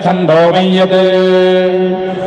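Men chanting a Vedic mantra in ghana patha recitation. After a few quick syllables, one syllable is held on a single steady pitch for more than a second.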